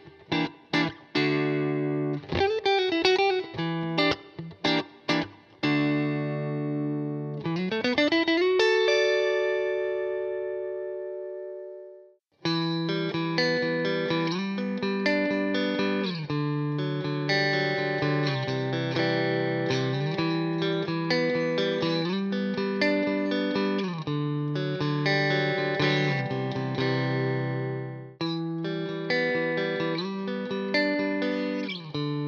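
Clean electric Telecasters through a Fender Deluxe Reverb amp. First a Maybach Teleman T-54 plays short, choppy chords, then a slide up into a ringing chord that fades away. After a brief break, a Fender Vintera '50s Modified Telecaster on both pickups plays a continuous chord pattern, and near the end, after another short break, a Fender American Professional II Telecaster takes over.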